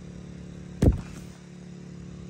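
Steady engine hum of a portable generator running, with one sharp knock close to the microphone a little under a second in.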